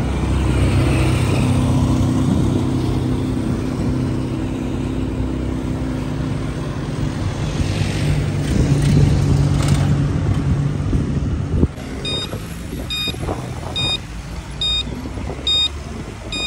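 Car engine running steadily as the car drives along, a loud low hum that drops away about twelve seconds in. It is followed by a series of short, high electronic beeps, roughly one a second.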